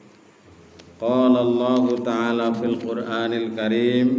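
A man's voice chanting an Arabic recitation in a drawn-out, melodic tone, starting about a second in after a short pause.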